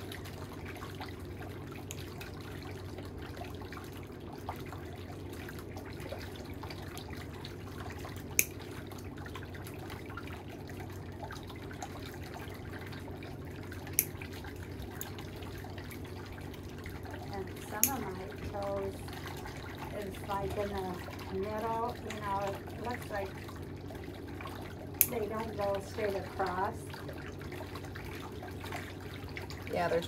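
Steel toenail nippers snipping thickened toenails: four sharp, separate clicks spread several seconds apart, over a steady low hum.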